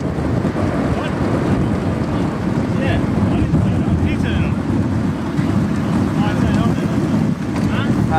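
Wind buffeting an action camera's microphone while riding a road bike at speed, a steady low rushing rumble.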